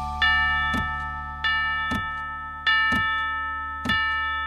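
A grandfather clock chime strikes four times, about a second apart, each stroke ringing and fading, over a held chord of backing music.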